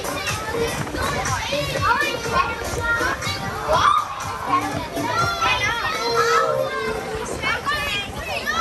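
A group of children playing as they jump about in an inflatable bouncy castle: many high voices squealing, calling and chattering over one another throughout.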